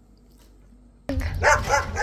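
Quiet for about a second, then a sudden run of short, quick, high-pitched calls over a low wind-like rumble.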